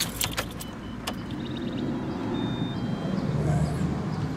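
Steady low rumble inside a car cabin, with a few handling clicks in the first second and several short high electronic beeps in the middle.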